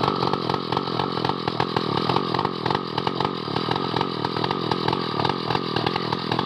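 Large two-stroke chainsaw running steadily under load, its bar cutting into the thick trunk of a medang tree.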